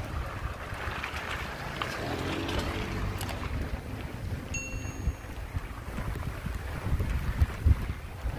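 Wind buffeting the phone's microphone as it rides along on a moving bicycle, a steady low rumble, with a brief high tone about four and a half seconds in and a few low bumps near the end.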